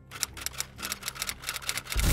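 Clicking sound effect: a quick series of sharp clicks, several a second, over a faint low steady tone.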